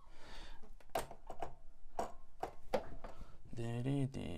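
A handful of sharp, irregularly spaced clicks from working a computer, then a short hummed vocal sound from a man near the end.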